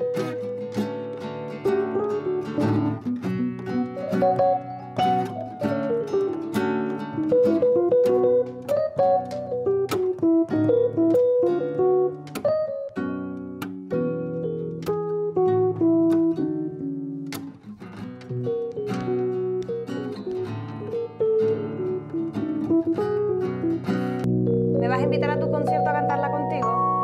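Acoustic guitar played alone, picking chords and a stepping melody note by note. Near the end a piano comes in with held chords.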